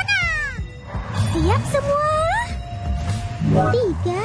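High-pitched cartoon children's voices exclaiming with sweeping rises and falls in pitch, over background music.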